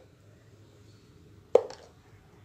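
Quiet room tone broken by a single short knock about one and a half seconds in, fading quickly.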